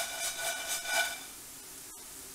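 Nonstick frying pan of croutons being shaken back and forth on a glass cooktop: a rhythmic scraping with a squeaky ringing note, about three strokes a second. It stops a little over a second in and leaves a faint steady hiss.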